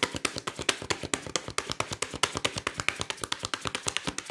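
A deck of fortune-telling cards being shuffled by hand: a quick, continuous run of crisp card flicks and slaps, about ten a second.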